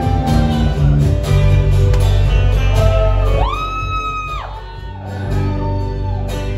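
Live band playing, with acoustic and electric guitars. About halfway through a high note slides up, holds for about a second and falls away.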